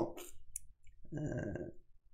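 A faint click, then a short, low murmured hum from a man's voice in a pause between sentences.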